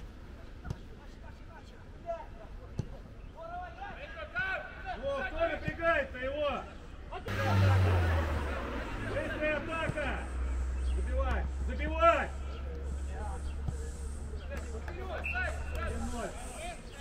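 Distant voices of footballers calling out to each other on the pitch during a training game, picked up by the camera, with a steady low rumble from about halfway through.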